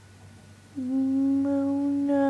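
A person humming one long, steady low note close to the microphone, starting just under a second in.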